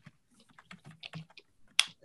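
Typing on a computer keyboard: a run of irregular key clicks, with one sharper click near the end.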